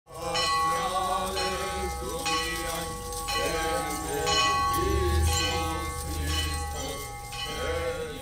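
Church bell ringing, struck about once a second, each stroke ringing on into the next, with voices underneath.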